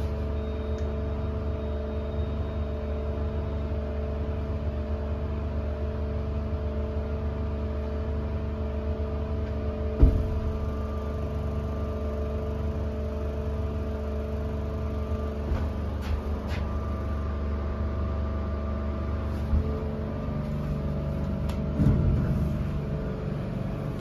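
Dover hydraulic elevator humming steadily with several steady tones while the car stays stopped: the elevator has malfunctioned and never moves. A sharp knock comes about ten seconds in, with a softer thump near the end.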